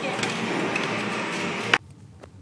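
Steady background din of a busy arcade: game machines and people blended into one noise. It cuts off suddenly near the end with a click, leaving quiet room tone.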